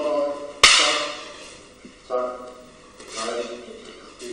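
A single sharp crack of wooden training sticks striking each other, about half a second in, with a short echo after it.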